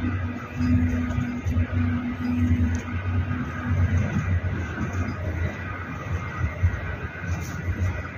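Wind rumbling on the microphone in uneven gusts, with a low steady tone that comes and goes.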